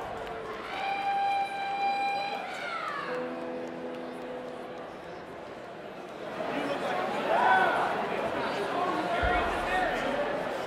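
Audience voices between songs: a long held whoop that falls away about three seconds in, then a lower held note, then scattered shouts and talk. A low thump comes near the end.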